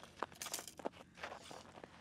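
Boots crunching and shifting in packed snow, with a few sharp clicks and short scraping rustles, as an angler hand-lines a fish up through an ice-fishing hole from a tip-up.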